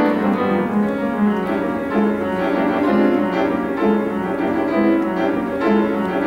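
Solo grand piano playing a rhythmic passage, with a low figure repeating about once a second under denser notes above.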